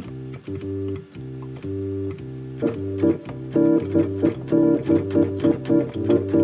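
Electronic keyboard playing a low bass line on the root and fifth, joined about two and a half seconds in by short repeated chords that give the third, seventh and ninth of a C9 chord.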